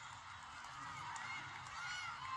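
Faint voices of a church congregation calling out in several drawn-out, rising-and-falling calls.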